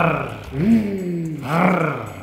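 Men's voices imitating a tiger's roar: three short vocal roars in quick succession, each rising and then falling in pitch.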